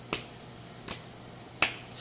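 Three sharp, short clicks about three-quarters of a second apart, the last the loudest.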